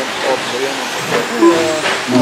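Electric 13.5-class short-course RC trucks racing on an indoor dirt track: a steady hiss of motors and tyres, with two sharp knocks, one just after a second in and one near the end, under people talking.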